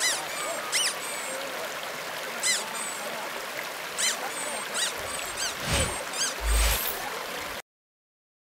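Birds chirping, short high calls spaced irregularly over a steady rushing background, with two low thumps near the end; the sound cuts off suddenly.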